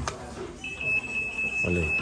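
A steady high-pitched electronic beep from a store device starts about half a second in and holds unbroken for about two seconds, after a sharp click at the very start.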